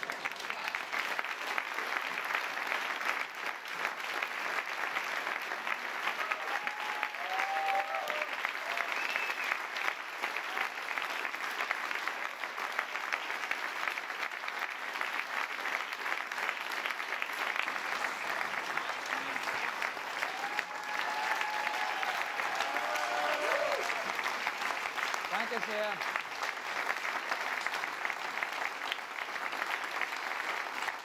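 Large theatre audience applauding steadily.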